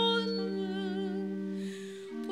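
A solo cantor singing the responsorial psalm in Portuguese, drawing out a held note with vibrato over sustained organ chords; the chord fades and changes near the end.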